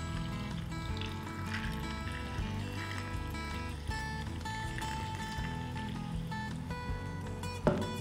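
Background music of steady held notes, with soda water trickling from a can into an ice-filled glass underneath it.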